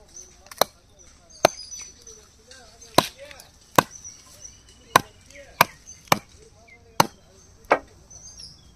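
A large machete-style knife chopping through raw chicken feet onto a wooden log chopping block: about nine sharp chops, roughly one a second, unevenly spaced.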